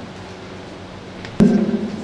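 Quiet room tone of a hall picked up through the PA microphone; about one and a half seconds in, a sudden knock on the podium microphone followed by a low sound through the PA.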